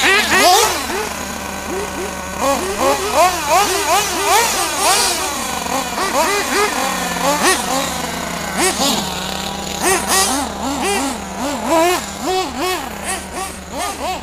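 Radio-controlled cars revving up and falling off again and again, in quick repeated rises and drops of pitch, over a steady lower engine tone.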